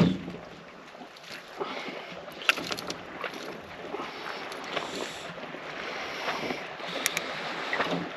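Light wind and water around a small boat, with a few faint clicks and rattles from a lure's double hooks as they are worked free of a landed rainbow trout's mouth.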